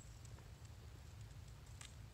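Near silence: faint low outdoor rumble with a few faint ticks.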